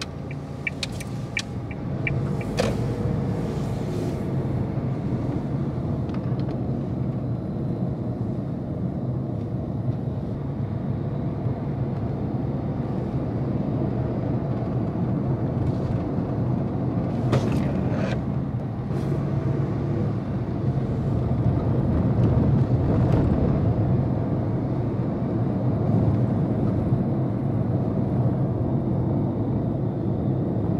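A car driving on city streets: steady engine rumble and tyre road noise, getting louder about two seconds in as the car moves off. Regular ticks come in the first couple of seconds, and a few brief sharp noises follow later on.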